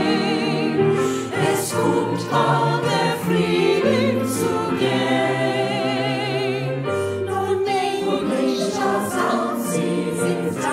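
Mixed choir of men's and women's voices singing a Yiddish song with piano accompaniment, sustained chords with vibrato in the upper voices.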